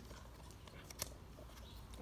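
Quiet outdoor background with a low steady hum and a single short click about a second in.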